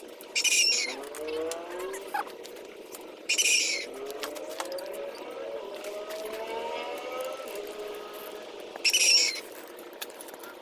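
A shovel scraping through dirt and yard debris three times in short strokes: near the start, about three and a half seconds in, and near the end. Between the strokes, birds keep calling in many overlapping gliding notes.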